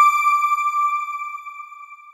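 Electronic chime of a news channel's logo sting: one bell-like ping struck once, its single clear tone fading away slowly.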